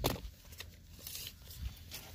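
Faint handling sounds of a tape measure and a ballistic gelatin block on a wooden table: one sharp knock at the start, then a few light taps and rustles.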